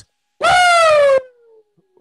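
A man's loud, high falsetto cry or whoop, held for just under a second and sliding slightly down in pitch, then trailing off faintly lower.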